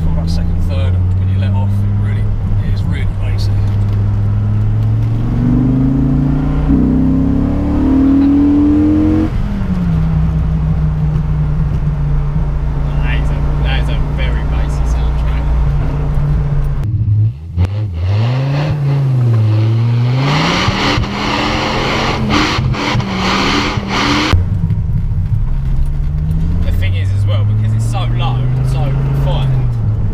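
Dodge Viper GTS's naturally aspirated pushrod V10 heard from inside the cabin, climbing in pitch under acceleration for several seconds with a gear change partway, then easing back to a steady cruise. Around the middle the engine note swings down and up under a loud rushing noise, and near the end it climbs again under throttle.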